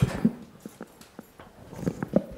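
Microphone handling noise as a podium gooseneck microphone is gripped and taken off its stand: a loud bump at the start, then scattered sharp taps and knocks that thicken near the end.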